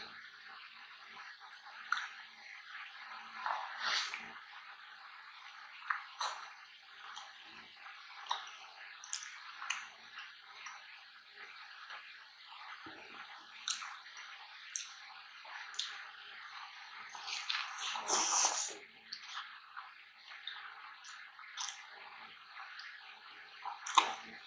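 Close-miked wet chewing of a soft-bun fried burger, with squishy, smacking mouth sounds and many short clicks. One louder, longer burst of noise comes about three-quarters of the way through.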